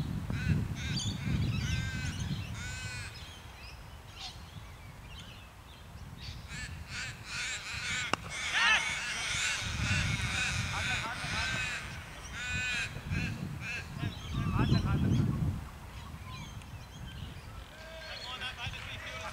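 Birds calling repeatedly in short, rising-and-falling calls, with wind rumbling on the microphone in gusts.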